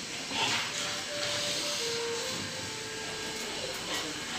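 Steady background hiss, with two faint brief tones about a second and two seconds in.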